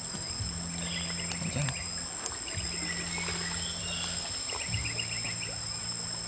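Insects droning steadily in two high tones, with short bursts of rapid chirping, over a low hum that comes and goes.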